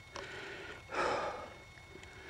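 A person breathing out hard once, about halfway through, from the effort of climbing a steep moor. Otherwise the sound is low and noisy.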